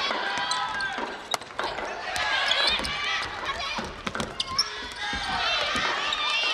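Futsal play on a wooden indoor court: several sharp kicks of the ball and short squeaks of players' shoes on the floor, with players shouting.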